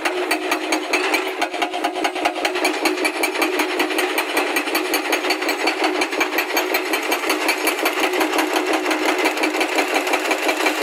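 Hydraulic rock breaker on a Hyundai crawler excavator hammering rock in rapid, evenly spaced blows, over a steady hum.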